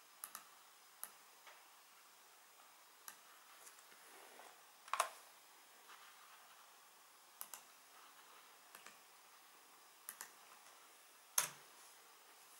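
Scattered clicks of a computer mouse and keyboard, some in quick press-and-release pairs, with two louder clicks about five seconds in and near the end.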